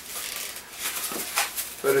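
Black 260 latex modelling balloon being twisted by hand into bubbles: latex rubbing and squeaking against the fingers, with one sharper sound about one and a half seconds in.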